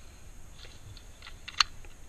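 Scattered light clicks and ticks at irregular intervals, with one sharper, louder click about one and a half seconds in.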